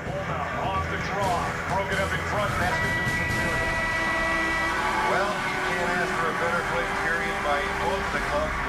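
Excited voices from a TV hockey broadcast, with a steady horn tone sounding about three seconds in and lasting about two seconds: the arena horn marking the end of the period as the clock runs out.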